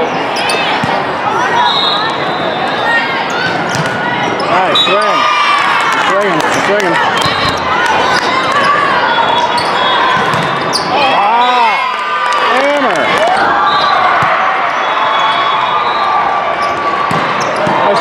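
Indoor volleyball play in a large hall: sneakers squeaking on the sport-court floor in short rising-and-falling chirps, scattered sharp hits of the ball, and a steady din of players and spectators calling and chattering.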